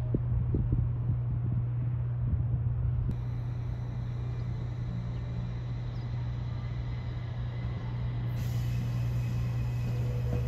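Steady low electrical hum from a JR 701 series electric train close by, with irregular wind rumble on the microphone.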